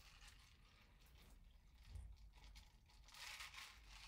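Near silence, with faint crunchy, crinkly noises close to the microphone, a little louder about two seconds in and again near the end.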